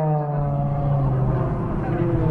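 Propeller race plane's six-cylinder Lycoming piston engine passing overhead, its pitch dropping as it goes by, then settling into a steady drone.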